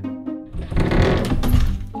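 Cartoon door-creak sound effect: a door creaks open with a rough, rapidly pulsing creak that starts about half a second in and lasts about a second and a half, over soft background music.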